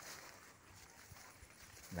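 Near silence: faint outdoor background with a few soft knocks.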